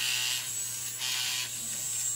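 Battery-powered Finishing Touch Flawless facial hair remover running with its head pressed to the cheek: a steady, thin, high buzz that dips briefly a couple of times as it is moved over the skin in circles.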